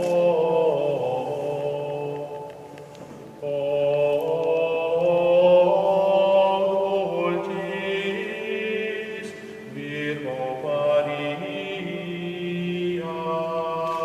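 Background music of slow vocal chant, sung in long held notes and phrases, with a lull about three seconds in.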